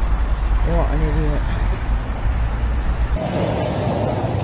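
Low, steady rumble of road traffic recorded on a phone at the roadside, with a few words of a voice about a second in. Near the end it cuts abruptly to a different recording: a steady, even hiss of roadway noise.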